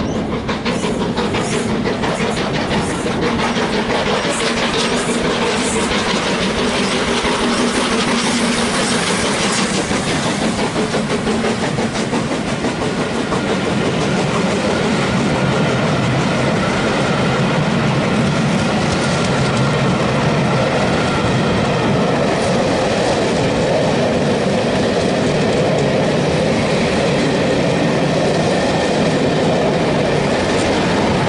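GWR Castle-class 4-6-0 steam locomotive 7029 Clun Castle passing at speed, followed by its long train of coaches rolling by with continuous wheel-on-rail noise that grows a little louder as they pass.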